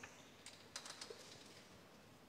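Near silence with a few faint, light clicks, several close together about a second in.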